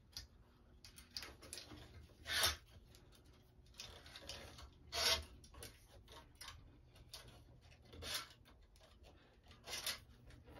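Squash string being woven as a cross string through the main strings and drawn through by hand, a rubbing rasp of string on string with each pull. Four louder pulls come a few seconds apart, with softer rubbing between.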